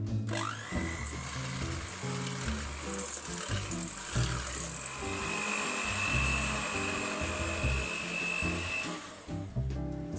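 Electric hand mixer beating egg yolks and sugar in a stainless steel bowl: the motor whine rises as it gets up to speed in the first half second, then runs steadily and stops shortly before the end.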